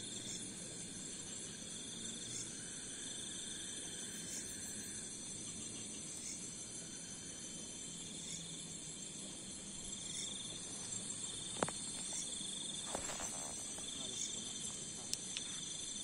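A night chorus of crickets and other insects: a steady high buzz with a second trill that swells and fades about every two to three seconds. A few faint clicks come in the last few seconds.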